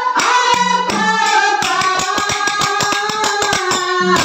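Kannada dollu pada folk song: a woman sings held notes into a microphone over pairs of small brass hand cymbals and a drum. The cymbal and drum strokes quicken to about five a second in the second half.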